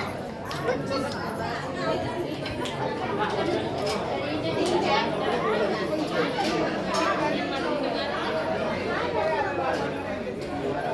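Indistinct chatter of several people talking at once, voices overlapping throughout.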